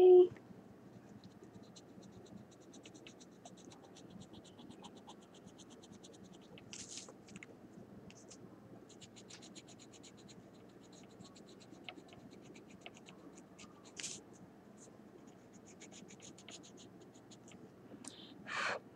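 Coloured pencil scratching on paper in runs of quick, even back-and-forth shading strokes, with a pause of a few seconds in between.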